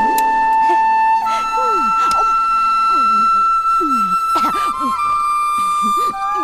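Background music led by a flute holding long, steady notes, stepping up in pitch about a second in and shifting again near the five-second mark, over short lower sliding notes.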